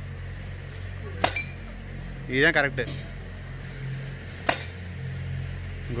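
Air-powered gun with a top hopper fired twice, about three seconds apart, each shot a sharp crack; the first is followed by a brief clink.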